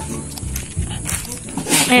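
Goats in an outdoor yard, faint animal sounds over steady background noise; a man's voice starts near the end.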